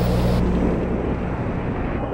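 Loud, steady rumbling roar with a low hum under it.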